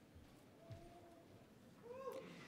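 Near silence: faint room tone of a large hall.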